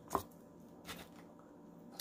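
Two small clicks of eating utensils and takeout containers being handled on a table: a sharp one just after the start and a softer one about a second in.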